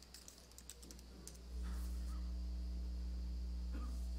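A few light keyboard typing clicks in the first second or so. About one and a half seconds in, a steady low electrical hum starts and holds, louder than the clicks.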